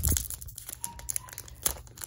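Foil booster pack wrapper crinkling as fingers work at its sealed top, struggling to tear it open: irregular crackles, densest at the start, with one sharp crackle near the end.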